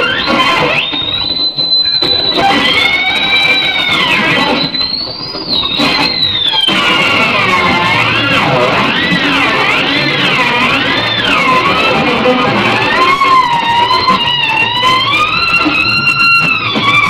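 Electric guitar playing a sustained, effects-laden lead: long held notes that bend up and down, with a wide, wobbling vibrato through the middle and held, quivering notes near the end.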